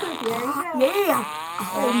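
A moo-box toy being tipped over, giving a drawn-out cow moo that starts about a second in and lasts almost a second, over a woman's voice.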